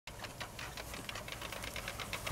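Honda walk-behind lawn mower's small engine running: a low hum with rapid, even ticking, about eight ticks a second.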